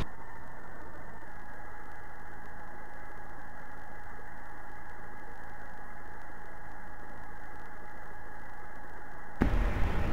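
Steady, muffled background hiss with a faint steady hum and no distinct events. Near the end it turns fuller and rougher.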